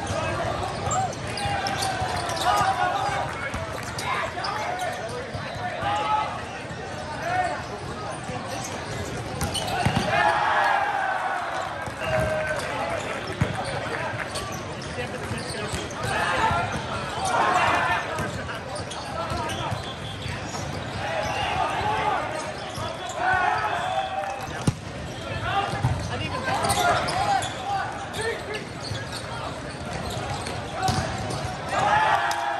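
Volleyball play in a big, echoing hall: players shouting calls, with sharp smacks of hands on the ball and balls bouncing on the court floor. Underneath runs a constant din of many voices from the surrounding courts.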